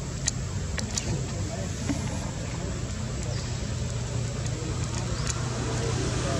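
A steady low motor hum, like an engine running nearby, with scattered faint clicks over it.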